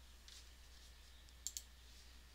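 Near silence over a faint low hum, with two faint clicks close together about one and a half seconds in.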